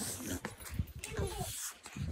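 Phone microphone handling noise and wind rumble as the phone is swung about, with a faint short whine about a second in.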